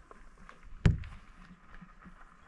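One sharp knock about a second in, the action camera bumping against a window pane, with a few faint handling clicks around it.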